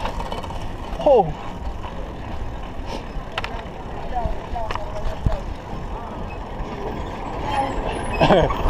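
Steady rumble of wind and tyres as a bicycle rides over a rough, sandy roadside, with vehicles running nearby. A short falling call comes about a second in, and a few sharp clicks follow near the middle.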